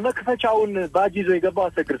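Speech only: one voice talking continuously, with no other sound standing out.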